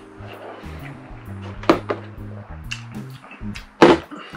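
Soft background music with steady low notes. A short sharp sound comes partway through and a louder one just before the end.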